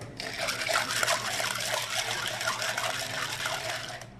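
Water running and splashing, a steady rushing noise that starts just after the beginning and stops shortly before the end.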